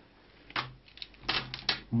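Items and their plastic packaging being handled: a quick run of five or six sharp clicks and rustles starting about half a second in.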